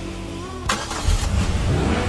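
Sound effect of a car engine starting and revving. A sharp crack comes about two-thirds of a second in, then a loud, low engine rumble with rising revs.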